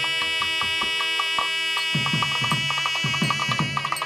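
South Indian temple wind instruments (long brass horns with flared bells and a reed pipe) hold one long, steady note after a short upward slide at the start. Drum strokes join about halfway, at roughly four a second.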